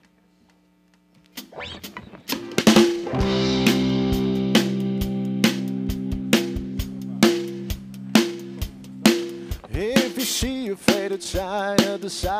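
Live rock band starting a song. After about a second of quiet, drum hits come in on a regular beat under a held electric guitar chord, and a singer enters near the end.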